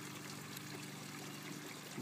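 Faint steady rushing background noise with a low, steady hum underneath.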